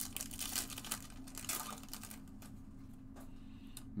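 Baseball card pack wrapper being torn open and crinkled by hand: a quick run of crackles in the first couple of seconds, thinning to occasional rustles.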